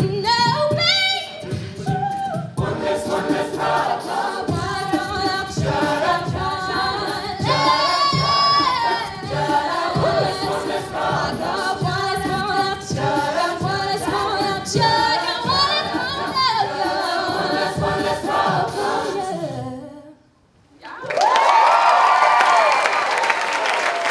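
A cappella group singing with a female soloist over a vocal-percussion beat. The song ends about 20 seconds in, and after a second of quiet the audience breaks into cheering and applause.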